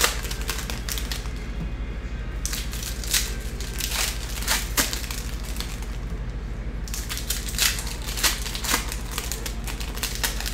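Foil trading-card pack wrappers crinkling as packs are torn open and the cards are pulled out and flipped through, in bursts with short pauses, over a low steady hum.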